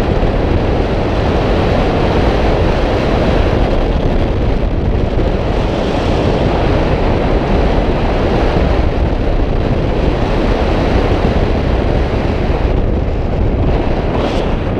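Airflow of a tandem paraglider in flight buffeting the selfie-stick camera's microphone: a loud, steady wind rumble.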